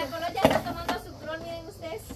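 Indistinct talking voices, with two sharp clicks about half a second and about a second in, from plastic cups being handled and knocked together.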